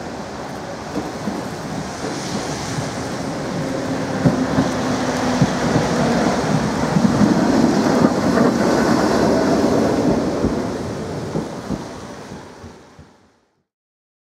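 DÜWAG bogie tram running past at close range, its wheels rumbling on the rails with scattered knocks over the points. It grows louder as the tram comes alongside, then dies away, fading out about a second before the end.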